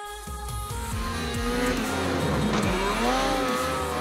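Snowmobile engine revving, its pitch rising and falling and peaking about three seconds in, mixed over electronic background music with a steady beat.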